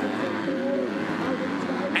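Several motocross bikes' engines revving through a turn, their pitch wavering up and down.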